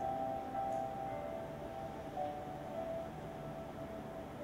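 Soft background music: a few sustained notes held together, shifting in pitch every second or so.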